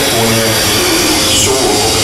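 Loud, steady noise drone with no clear pitch, part of a live noise-music performance, with a man's voice saying a few Swedish words over it at the start.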